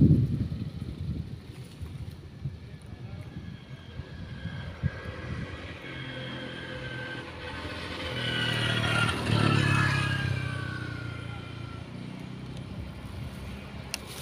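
A motorbike passing on the road: its engine grows louder to a peak about nine to ten seconds in, the pitch dropping slightly as it goes by, then fades away. A brief low thump at the very start.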